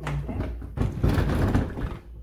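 Plastic-bodied sewing machine being slid and turned around on a wooden tabletop: a scraping, rubbing sound of about a second in the middle.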